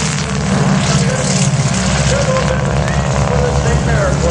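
Nine-cylinder Pratt & Whitney R-1340 radial engine of a North American T-6 Texan trainer running at low power as it taxis close past, a loud, steady low rumble that turns into a pulsing beat near the end.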